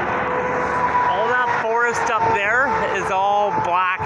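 Steady road and engine noise inside a moving car, with a person's voice coming in about a second in and continuing.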